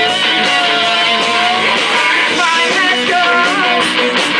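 Live indie rock band playing guitars, with female singers at the microphones. A long sung note is held in the first second and a half, then the vocal line moves on over the steady guitars.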